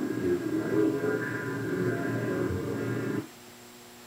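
Replay of a ghost-investigation audio recording: muffled background voices over a steady hum, among them a deep voice that sounds as if in slow motion, which the investigators take for a spirit voice. The playback cuts off abruptly about three seconds in.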